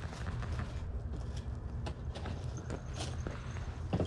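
Plush toys being handled and rummaged through in a plastic tote: scattered light clicks, taps and rustles of tags and packaging, over a steady low rumble.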